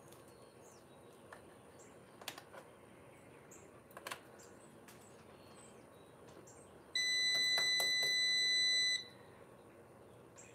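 A single steady electronic beep lasting about two seconds, starting about seven seconds in; it is the loudest sound here. Before it come a few faint clicks of hand-work on the ATV and faint bird chirps.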